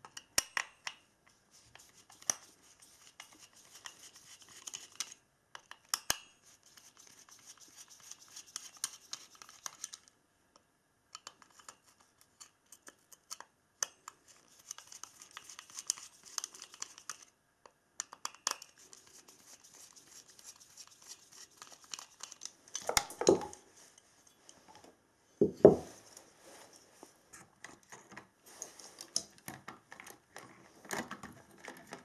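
Hands and a screwdriver working on a small CPU heatsink and fan over a plastic housing: on-and-off scraping and rubbing with many small clicks. Near the end come two louder knocks a couple of seconds apart.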